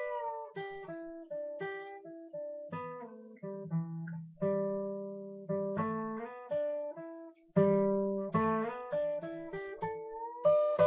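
Steel-string acoustic guitar playing a blues lick in the third blues box position: a string of picked single notes and double stops, with a bent note easing back down at the start.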